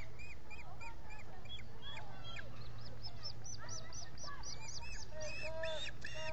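Young ospreys calling from the nest: a long series of short, high whistled chirps, several a second, that grow faster and louder about halfway through. A steady low hum sits underneath.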